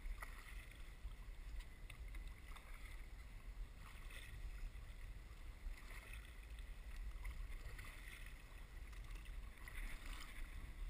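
Kayak paddle strokes in the water, the blade splashing in about every two seconds, over a steady low rumble of wind.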